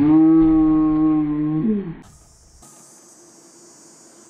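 A woman's long scream at a steady pitch for nearly two seconds, dropping in pitch as it ends: her shriek as ice-cold water drenches her. It is followed by quieter background.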